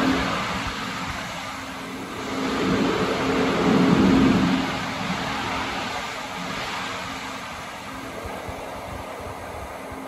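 A TriMet MAX light-rail train standing at an underground platform with its doors open, its equipment giving a steady low hum over an echoing rumble. The sound swells louder about three to four seconds in, then settles.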